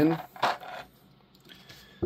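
Hard plastic action-figure parts clattering as the figure is picked up: a short clatter about half a second in, followed by a few faint clicks.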